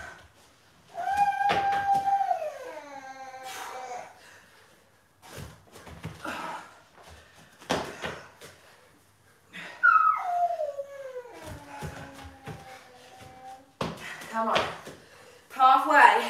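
Two drawn-out exertion groans, each held and then falling in pitch, between several short knocks of dumbbells and bodies landing on the floor mats during dumbbell burpees and overhead presses.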